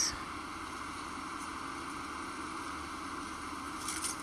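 Wind moving through the forest trees: a steady rushing hiss with no gusts rising or falling, and a few faint clicks near the end.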